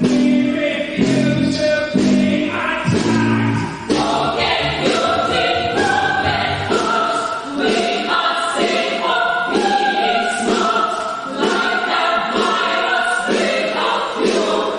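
A choir singing in short, evenly repeated chords. The low notes drop out before the middle, leaving higher voices.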